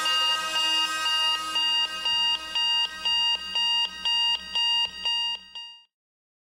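Electronic alarm clock beeping in a steady pulse of about two beeps a second, then stopping shortly before the end.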